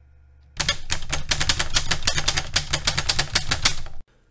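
A rapid, even run of sharp clicks, about eight to ten a second, starting about half a second in over a low hum, in the manner of a typing sound effect.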